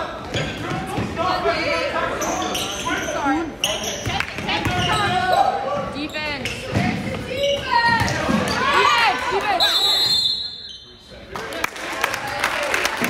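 Basketball game sounds in a gym: a ball bouncing on the hardwood floor, sneakers squeaking, and players and spectators calling out. About ten seconds in a referee's whistle sounds briefly, followed by a short lull.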